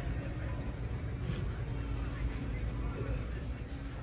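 Big-box store ambience: a steady low hum of ventilation with a faint background murmur.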